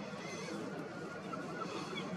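A steady wash of outdoor noise with several short, high chirping calls from birds.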